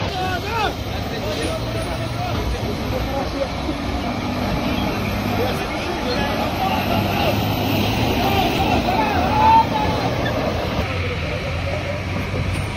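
Heavy truck engines running steadily as lorries move through mud, with several people's voices calling out over them.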